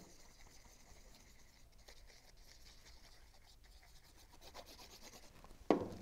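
Faint rubbing and scratching of a tacky glue bottle's applicator tip being drawn across cardstock to lay down glue, with light paper handling.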